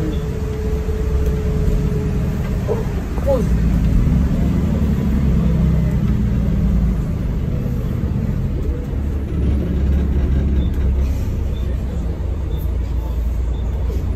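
Interior rumble of a Volvo B12BLE city bus under way: steady diesel engine and road noise heard from the passenger saloon, swelling a little about four seconds in.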